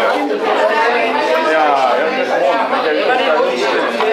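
Chatter of several people talking at once, overlapping conversations with no single voice standing out.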